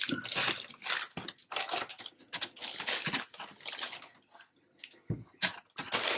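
Thin clear plastic bag crinkling and rustling in irregular bursts as a cardboard box is worked out of it, dying away after about four seconds. A soft thump follows near the end as the box is set down on the desk.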